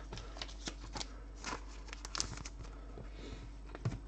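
Trading cards being handled and sorted: soft, scattered flicks and taps of card stock over a low steady hum.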